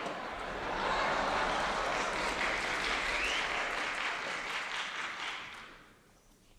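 Concert audience applauding, swelling about a second in and dying away near the end.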